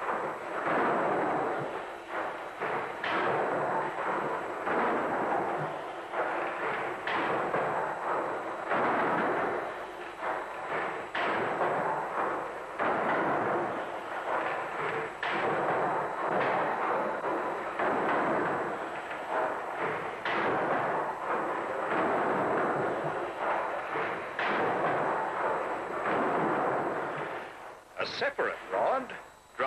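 Victorian steam beam pumping engine running: a steady mechanical rush with repeated knocks every second or two as the rods and valve gear work.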